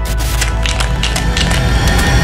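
Glitch sound effect: a dense, noisy static with many sharp clicks, over a steady low bass from the music bed.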